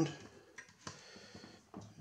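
A few light clicks and taps as hands handle parts inside the opened sheet-metal case of an electrosurgical unit, around its loosely mounted high-voltage transformer.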